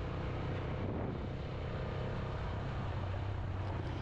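Vehicle engine and road noise: a steady, even drone while driving along at constant speed.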